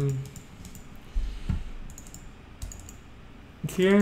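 Scattered computer keyboard keystrokes and clicks, a few sharp taps spread across the pause.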